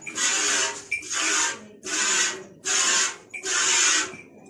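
Hand-milking: streams of milk squirting into an almost empty steel bucket, heard as a rhythmic hiss in about five bursts, one every three-quarters of a second or so.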